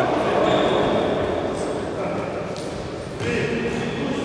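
A futsal game on a hard indoor court: the ball is kicked and bounces, and the sound echoes around a large sports hall, with voices mixed in.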